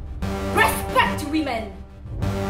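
A woman's emphatic spoken line over steady background music.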